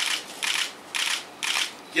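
Still-camera shutter clicks, four in about two seconds, roughly two a second.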